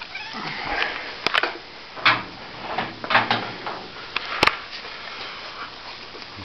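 Handling noise as the camera is carried: scattered sharp clicks and knocks over rustling, the sharpest knock about four and a half seconds in.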